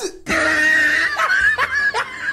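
A man laughing: a long, high-pitched held squeal of laughter, then shorter broken laughs.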